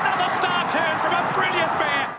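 A horse-race commentator calling the finish fast and at a high, excited pitch over a loud, steady crowd cheer.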